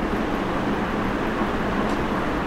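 Steady room noise: an even hiss over a low hum, unchanging throughout.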